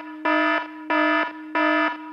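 Alarm-buzzer sound effect: a harsh buzz on one steady pitch, pulsing on and off about every two-thirds of a second, marking a warning.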